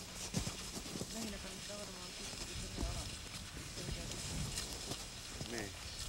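Faint voices talking, with a few light knocks and scrapes.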